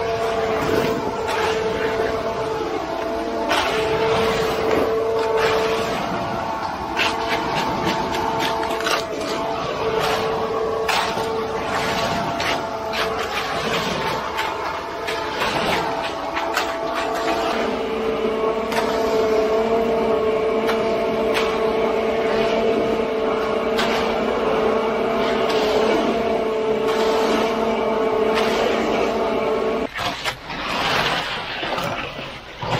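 A concrete conveyor truck running with a steady pitched whine that weakens in places and comes back strongly for the last third. Over it come irregular scrapes and clicks of concrete rakes dragging through wet concrete and its stones.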